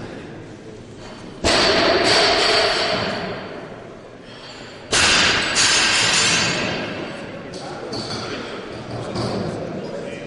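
Two loud bangs that echo through a large hall, the first about a second and a half in and the second about five seconds in, each ringing on for a second or two.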